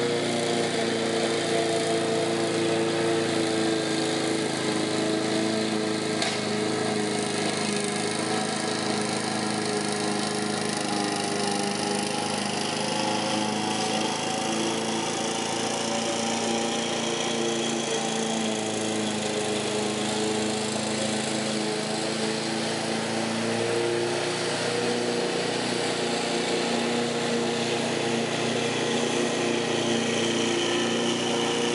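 Walk-behind petrol lawn mower with a Briggs & Stratton engine running steadily while cutting grass, its engine note wavering a little in pitch.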